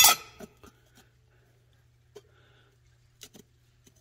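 Faint, scattered light clicks and taps of a metal trim plate being set in place on a Ford 5.0 V8's intake, over a low steady hum.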